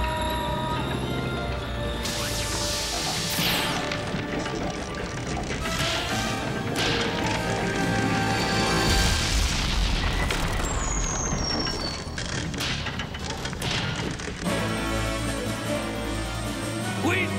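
Cartoon action soundtrack: dramatic music mixed with crashes and explosion booms.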